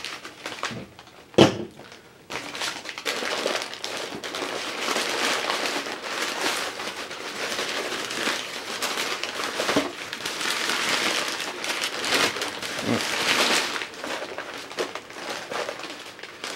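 Crumpled brown kraft packing paper rustling and crinkling as it is handled and pulled out of a cardboard box. A single sharp thump about a second and a half in is the loudest moment.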